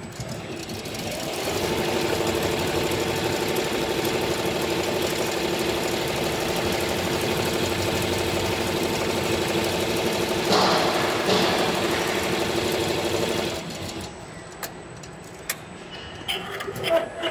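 Richpeace multi-needle cap embroidery machine stitching at speed. It speeds up over the first couple of seconds, runs steadily with a rapid hum, gives two short louder rasps about two-thirds of the way through, then slows and stops a couple of seconds before the end.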